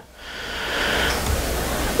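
A rushing hiss with a low rumble underneath, swelling over the first second and then holding steady.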